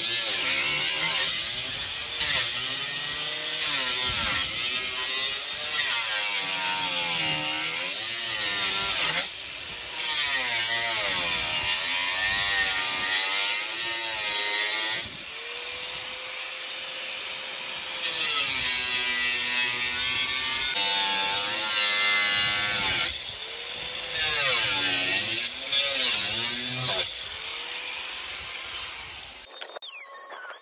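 Angle grinder with a cut-off wheel cutting through the van's steel floor. The motor's pitch dips and rises over and over as the wheel is pressed into the metal and eased off. It stops near the end.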